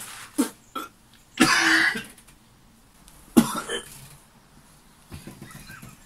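A man gagging and coughing in disgust in a few separate short heaves, the longest about a second and a half in and a sharp one about three and a half seconds in.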